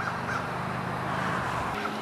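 Outdoor background: a steady low hum, with a few faint, short bird calls near the start.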